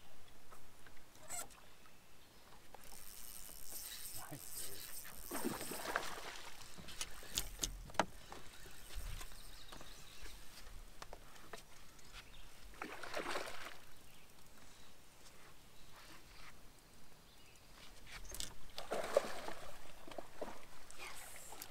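Water splashing beside a boat in three separate surges of about a second each, as a hooked smallmouth bass is played to the boat, with a couple of light knocks in between.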